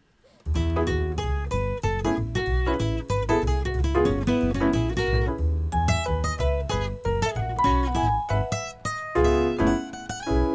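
Digital piano and acoustic guitar playing an instrumental intro together, starting about half a second in, with a steady bass line under quick melody notes.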